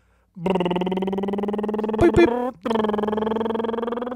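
A person holding a long, steady-pitched hum like a hesitant "ummm" while deciding how to begin. It is drawn out twice, with a short break and a couple of small mouth clicks about two and a half seconds in.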